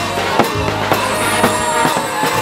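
Brass marching band playing: trumpets and a deep bass horn carrying the tune over a bass drum and crashing cymbals that strike about twice a second.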